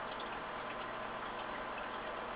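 Steady background hiss with faint, light ticking and no guitar being played.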